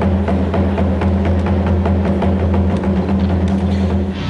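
Stage music: a loud, steady low drone under an even percussion beat of about four strikes a second.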